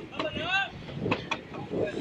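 Steady low noise of a boat under way, from engine and wind. About half a second in comes a brief voice-like call that rises and falls, and a couple of sharp clicks follow about a second in.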